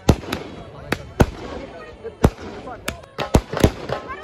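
Aerial fireworks bursting overhead: a string of sharp bangs, about eight in four seconds at uneven intervals, with crackle between them.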